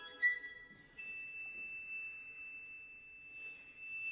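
Solo violin, unaccompanied, holding a very high, quiet sustained note for about three and a half seconds, after a brief shorter note at the start.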